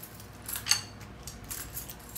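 Kryptonite steel U-lock being handled: a few light metallic clicks and rattles, with one sharper clink just under a second in.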